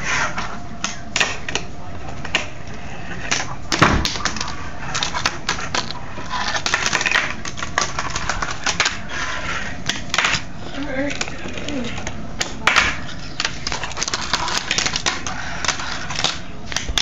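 Fingerboard clacking on a wooden tabletop: irregular small clicks and knocks of the board striking and rolling on the wood, with one louder knock about four seconds in.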